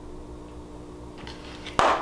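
Faint handling of makeup packaging over a low steady hum, then one short sharp knock near the end as an item is set down.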